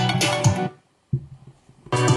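Guitar-led song played back through a small JBL Clip bluetooth speaker. It cuts off abruptly under a second in, and after a brief near-silent gap music starts again near the end, as the playback switches for the listening comparison.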